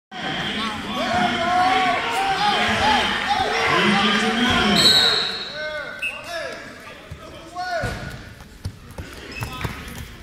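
Many short rubber-soled shoe squeaks on the mat and gym floor in an echoing gym, densest in the first half. A brief high whistle sounds about five seconds in, and a few dull knocks of bodies on the mat follow near the end.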